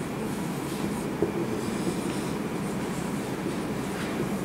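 Marker writing on a whiteboard, faint strokes over a steady low room hum, with one short knock about a second in.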